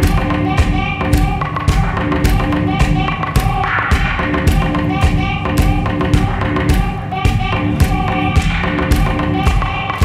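Live band with a string section playing an instrumental stretch of an electronic-pop song without vocals: a steady drum beat, about two hits a second, under repeating held keyboard and string notes.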